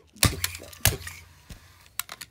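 Plastic TrackMaster toy train engines handled by hand, giving a few sharp plastic clacks and knocks, the two loudest in the first second.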